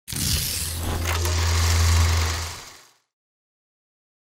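Logo sting sound effect: a noisy rush over a deep, steady hum, with a sharp hit about a second in, fading out just before the three-second mark.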